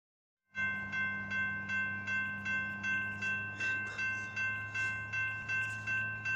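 Railroad grade-crossing warning bell ringing in a steady, even rhythm of about three strikes a second, starting about half a second in, with a steady low hum underneath.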